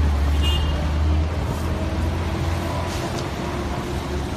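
Low, steady rumble of city street traffic, with a brief high squeal about half a second in.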